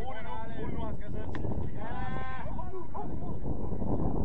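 Two long, drawn-out shouts from players on the pitch, about two seconds apart, with one sharp knock between them, over a steady low noise.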